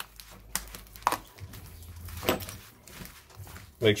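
Metal spoon stirring seasoned raw beef strips in a plastic meat tray: a few sharp clicks and scrapes of the spoon against the plastic, over a low hum.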